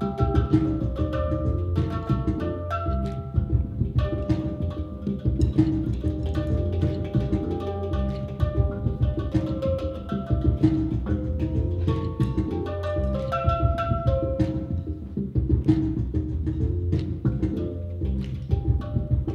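Steel handpan (hang drum) played with the hands and fingers: a continuous flow of quick strikes, each ringing out as a short pitched note, forming a melody over a deep low note underneath.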